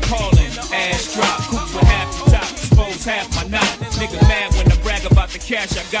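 Hip hop track: rapped vocals over a beat with a heavy kick drum and deep bass.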